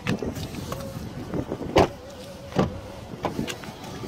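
2012 Kia K7's doors being shut and opened: a series of clunks and knocks, the loudest a little under two seconds in and another about a second later.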